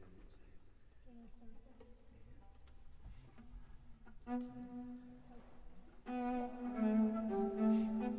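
Bowed string section playing held notes: a few faint notes at first, then a single sustained note about four seconds in, and about six seconds in several strings join in a louder held chord.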